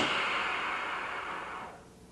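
Compressed air hissing out of the spring brake side of a truck air brake chamber, fading away and stopping after under two seconds. As the air exhausts, the large parking spring expands and pushes the rod out, applying the spring brake.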